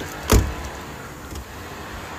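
A car's rear door slammed shut with a single heavy thud about a third of a second in, over steady street noise.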